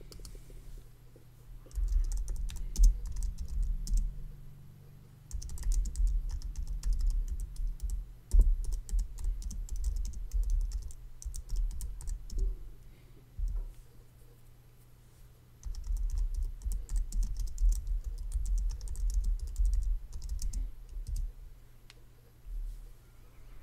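Computer keyboard typing close to the microphone in several runs of rapid keystrokes with short pauses between, over a steady low hum.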